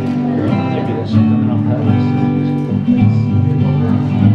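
Steel-string acoustic guitar strumming chords: the instrumental opening of a folk song, before the singing comes in.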